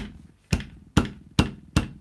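Five sharp knocks on a wooden desk, struck like a judge's gavel, about half a second apart and coming slightly quicker towards the end.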